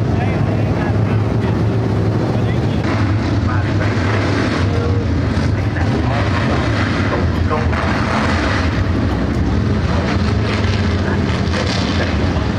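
A pack of dirt-track stock cars running together, many engines blending into one steady, loud drone.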